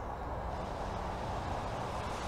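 Road traffic from a nearby road: a steady rushing of car tyres on tarmac with a low rumble, growing slightly louder.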